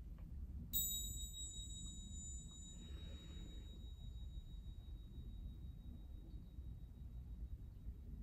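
A pair of small hand bells on a cord, struck together once about a second in, giving a high, clear ring that fades slowly over several seconds.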